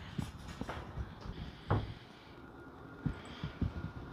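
A few soft, scattered knocks and clicks over low room noise.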